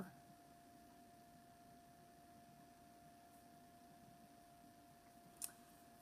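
Near silence: faint room tone with a thin steady hum, and one short click about five seconds in.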